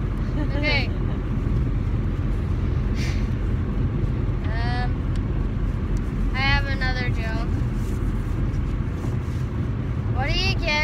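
Steady low road and engine rumble inside a moving car's cabin, with a high child's voice breaking in briefly a few times.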